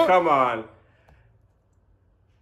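Speech dying away in the first half-second, then near silence with one faint click about a second in.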